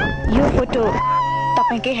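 A woman's high-pitched screams and laughter as she bounces on a bungee cord after the jump, over a song with a steady low held note and a sung line coming in near the end.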